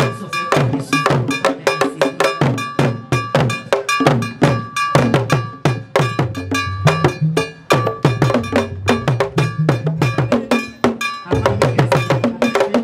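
Ghanaian traditional drum ensemble: several wooden pegged drums beaten with sticks in a fast, dense interlocking rhythm, over a repeating clang of a metal bell.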